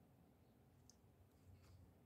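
Near silence: room tone, with a few very faint clicks around the middle.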